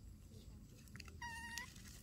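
A baby macaque gives one short, high call a little over a second in, lasting under half a second and turning up slightly at the end, with a few faint clicks just before it.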